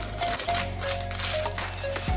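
Soft background music with a few held notes, over a scatter of light clicks and taps from handling a bagged item.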